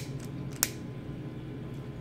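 Long-reach butane utility lighter's trigger clicking twice, about half a second apart, as it is sparked to light, over a faint steady hum.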